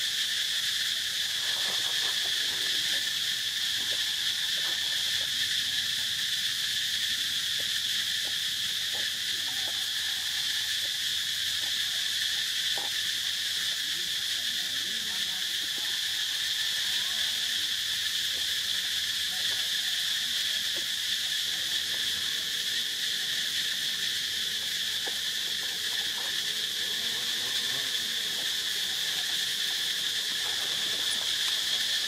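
A steady insect chorus: a continuous high-pitched drone with a weaker, lower band beneath it. Faint scattered rustles and clicks sit under it.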